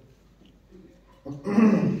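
Quiet room for about a second, then a man's short, loud cough together with a couple of spoken words near the end.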